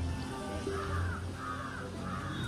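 A crow cawing in a quick run of harsh calls, about two a second, starting just under a second in, with faint music beneath.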